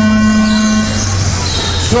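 Race start horn sounding one steady tone for about a second, the signal that starts the race.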